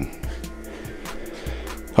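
AIMS 1200-watt inverter running with a steady electrical buzz, a few steady tones, and a low drone that drops out and returns near the end. Its small cooling fans are running too. The owner is unsure whether the buzz is normal transformer noise or the fan bearings.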